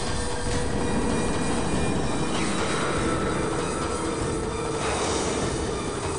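Chase-scene soundtrack: a horse galloping under a loud, dense, steady background score with held high notes.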